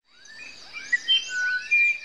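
Birdsong fading in: several birds chirping and whistling at once, with clear held whistled notes at different pitches under a repeating high trill.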